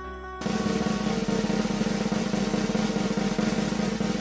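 Snare drum roll sound effect starting about half a second in, a fast, even run of strokes held at a steady level.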